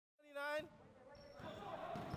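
Indoor basketball game in a sports hall: after a brief dropout, a short shouted call, then faint court noise of play.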